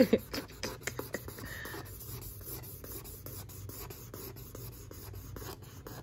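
A felt-tip marker scribbling quickly back and forth on a sheet of paper: a rapid, irregular run of short strokes.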